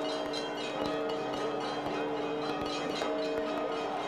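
Church bells ringing: several bells struck over and over, with a low tone held throughout and higher bells sounding on and off.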